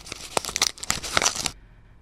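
Paper envelope being torn open, a radio-drama sound effect: a crackly tearing and crinkling of paper that lasts about a second and a half and then stops.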